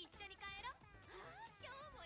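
Faint anime dialogue in Japanese: a young woman's voice speaking quick, high-pitched lines.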